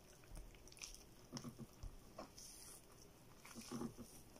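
Faint, soft wet squishing of raw chicken skin and flesh being pulled and worked apart by hand while the crop is separated out, in a few short scattered sounds.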